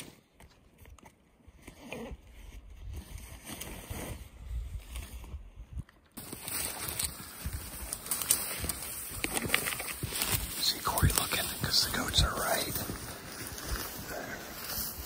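Faint low rumble for about six seconds, then an abrupt change to footsteps crunching through snow and dry brush, with irregular snaps and rustles.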